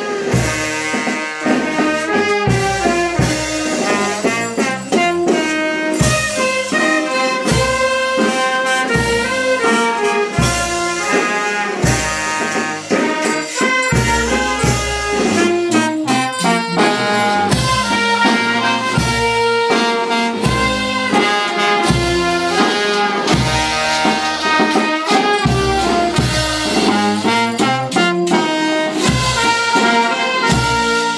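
Village brass band of trumpets, saxophones and a sousaphone, with cymbals and drums, playing a lively dance tune over a steady drum beat: music for the negritos dance.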